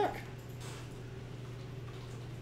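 A steady low electrical hum with faint hiss: room tone, with the end of a spoken word right at the start.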